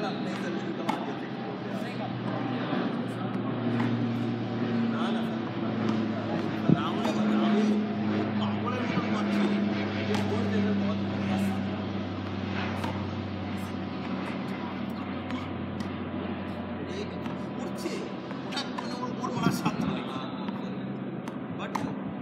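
A low, steady drone that shifts in pitch now and then, with faint voices and scattered light knocks around it.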